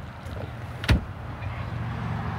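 A single sharp knock about a second in, over a steady low rumble.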